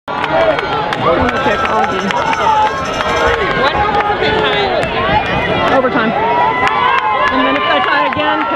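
Spectators in the stands of a soccer game talking and calling out over one another, a continuous crowd chatter with occasional held shouts.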